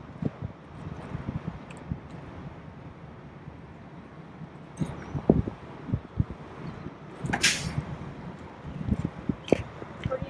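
The tilt hood of a Freightliner Cascadia semi truck being swung shut: scattered knocks and thumps, a loud short rush about seven and a half seconds in as it comes down against the cab, then a few sharp clicks near the end as it is latched.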